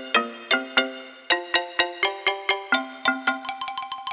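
Yamaha PSR-EW425 digital keyboard playing one of its preset voices: a run of notes, each starting sharply and dying away quickly, coming faster near the end.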